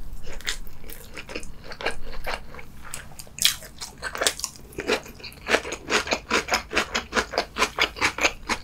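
Close-miked chewing of crunchy braised lotus root: a crisp bite about three and a half seconds in, then a steady run of crunches about three a second.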